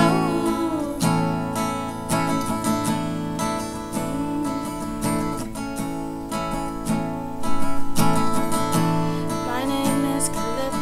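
Acoustic guitar strummed chords in an instrumental passage between verses, with a stroke about once a second and a louder flurry of quick strums about three-quarters of the way through.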